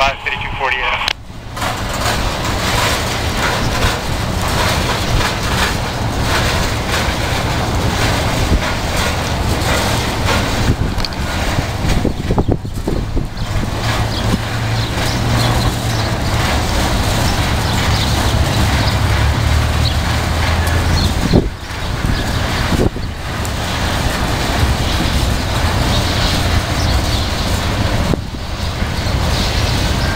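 CSX freight train passing close by: a steady low rumble and rattle of freight cars rolling over the rails, with wind buffeting the microphone.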